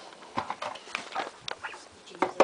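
A handful of irregular light knocks and clicks with soft rustling between them, like handling or movement noise.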